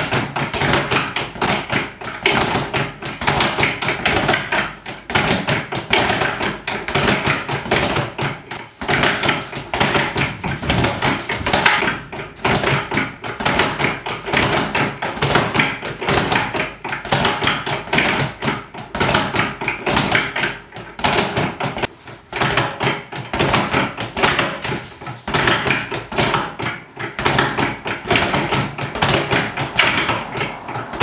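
A speed bag punched in fast runs by a gloved boxer, the bag rebounding off its overhead platform in a rapid, continuous stream of thuds and taps.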